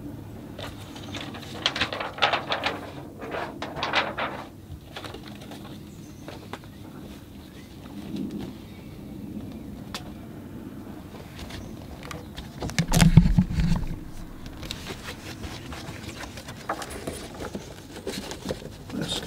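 Small handling noises from art supplies and the table: a run of quick clicks and rustles in the first few seconds, a low thump about 13 seconds in, which is the loudest sound, then scattered faint clicks.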